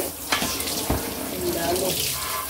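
Water from a hand-held shower sprayer splashing onto a plastic refrigerator tray as it is rinsed, a steady hiss with two sharp knocks of the tray being handled, about a third of a second and a second in.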